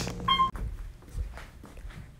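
Hotel elevator's short electronic beep, a single tone lasting about a quarter second, followed by faint knocks and shuffling.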